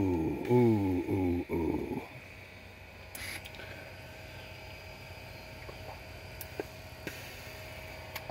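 A man's wordless vocal sounds: several drawn-out sounds, each falling in pitch, over the first two seconds. A quiet, steady outdoor background follows.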